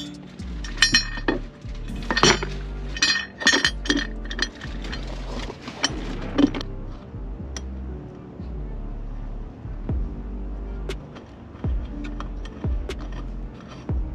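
Steel bolts clinking against a billet aluminium shifter base plate as they are set into its holes: a run of sharp clinks in the first half, then only a few scattered light clicks as a hand tool works a bolt head, over background music.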